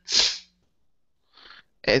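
A person's short, sharp burst of breath noise at the start, then quiet.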